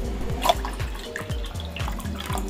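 Water pouring, dripping and splashing into a steel pan that already holds water, over background music.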